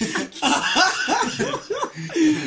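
Young men laughing hard, a quick run of pitched 'ha' bursts after a brief catch of breath.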